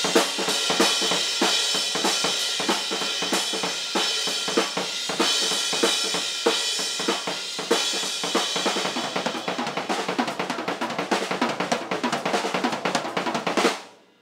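Amber acrylic Ludwig Vistalite drum kit played hard with sticks: snare, toms and bass drum under ringing cymbals. The strokes grow faster and denser over the last few seconds into a rapid fill, then stop abruptly near the end.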